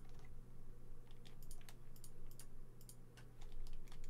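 Computer keyboard and mouse clicking: a string of light, irregular clicks as keys are tapped and vertices are clicked.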